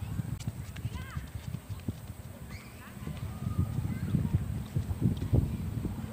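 Wind buffeting the microphone in uneven gusts, a low irregular rumble.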